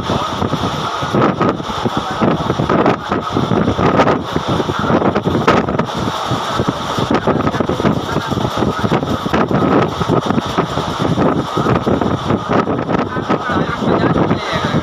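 Express passenger train running at high speed, heard from an open coach doorway: a steady rumble with irregular clatter of wheels on rails, and wind buffeting the microphone.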